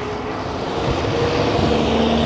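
Road traffic on a city street: a steady low rumble of vehicle engines, with a faint steady engine hum.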